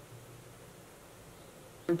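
Faint steady room tone: a low hiss with a weak hum and no distinct sounds. A woman starts speaking right at the end.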